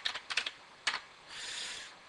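Computer keyboard keystrokes, several quick taps in the first second, then a short soft hiss about one and a half seconds in.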